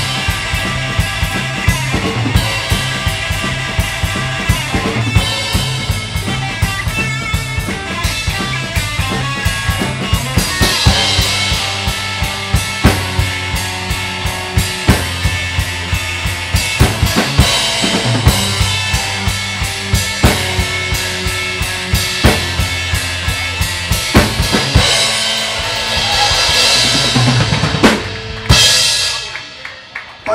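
Live rock band playing: a Les Paul-style electric guitar over bass and a drum kit with a driving beat, ending on a final crash that rings out and dies away near the end.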